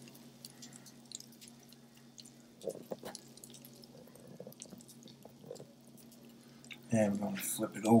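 Faint crackling and sizzling from breaded chicken fillets on a foil-lined tray just out of a 450° toaster oven, over a low steady electrical hum, with a couple of short louder sounds about three seconds in. Speech starts near the end.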